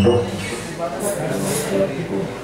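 A man singing into a headset microphone over an electronic keyboard accompaniment, his voice holding some notes for about half a second.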